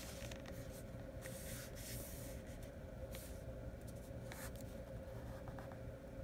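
Soft paper rustling and rubbing in short strokes as hands fold glued paper over the edges of chipboard covers and smooth it down, with a few small ticks. A steady background hum runs underneath.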